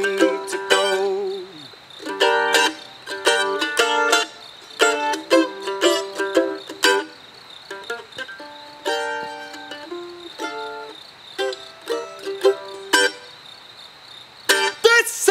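Mandolin picking an instrumental break of a bluegrass tune: short melodic phrases of plucked notes with brief pauses between them.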